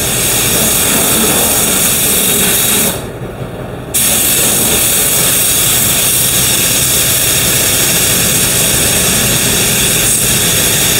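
Compressed-air paint spray gun hissing steadily as it sprays. The hiss stops for about a second near a third of the way in, then the gun sprays again.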